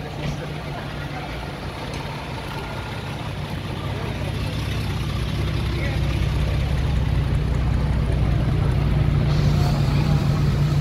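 Idling V8 engine of a C3 Chevrolet Corvette: a steady low rumble that grows louder over the second half.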